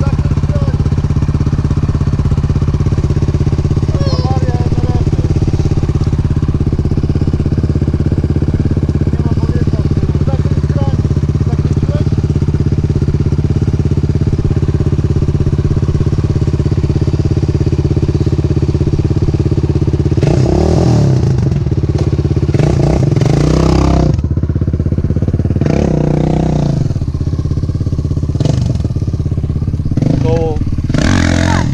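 MRF 80 pit bike's small single-cylinder engine idling steadily, heard close up. After about twenty seconds it is revved in several short bursts.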